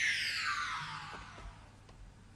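Synthesized whistle sound effect for a flying leap, gliding steadily down in pitch and fading away.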